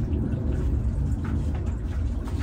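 A steady low rumble of background noise, with a few faint soft rustles in the second half.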